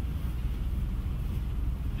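Steady low background rumble of the meeting room, with no voice over it.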